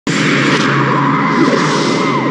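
Dramatic film soundtrack effect: a loud, steady rushing noise over a low sustained drone, with a few faint gliding whistles.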